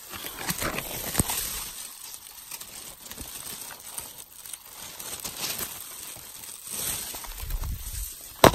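Dry grass and plant litter rustling and crackling as it is brushed and pushed aside at close range, with a sharp click about a second in.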